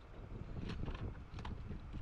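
Wind buffeting an outdoor camera microphone, a steady low rumble, with a few light clicks and knocks from handling near the middle.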